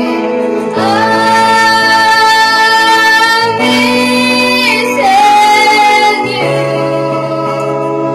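A woman singing into a handheld microphone over instrumental backing music. She holds long notes, one from about a second in until past the middle, and another shortly after.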